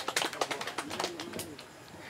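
Handling noise on a handheld microphone as it is moved and passed: a quick run of small clicks and knocks over the first second and a half. A faint, low wavering sound sits underneath around the middle.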